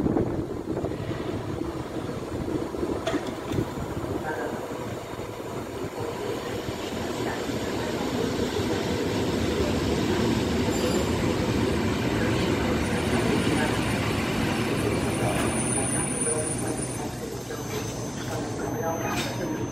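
Polish EN57 electric multiple unit, two units coupled, pulling into the platform and slowing to a stop. The running noise grows louder as it nears, with a faint high whine in the second half.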